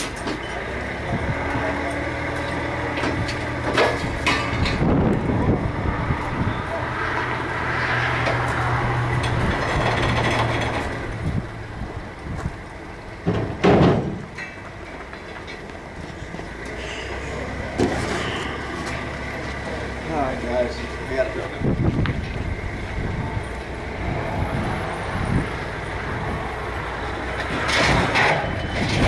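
A vehicle engine idling with a steady low hum that stops a little before halfway and comes back later. A single loud metallic clank comes just before halfway, with a few lighter knocks elsewhere, and voices too faint to make out.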